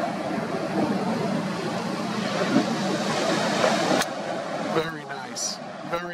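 Steady rush of wind and breaking ocean surf, with the wind buffeting the microphone; a sharp click about four seconds in.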